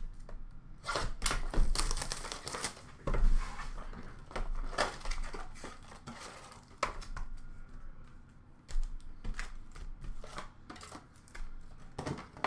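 Hands opening a cardboard trading-card blaster box and pulling out its packs: irregular taps, scuffs and rustles of cardboard and wrappers, loudest in the first few seconds.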